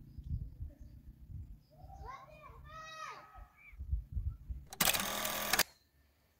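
Distant children's voices calling out in high, sliding tones, over a low rumble. Near the end comes a short, loud burst of noise lasting under a second.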